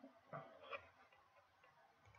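Near silence, with two faint computer-mouse clicks about half a second apart in the first second.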